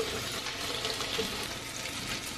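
Beyond Meat sausages sizzling steadily in butter in a frying pan.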